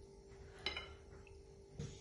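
A single light clink of a metal spoon against a glass baking dish about two-thirds of a second in, otherwise quiet with a faint steady hum.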